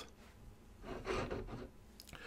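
Faint rubbing and shuffling lasting about a second, near the middle, as hands reach for and pick up a glass ink bottle from the desk.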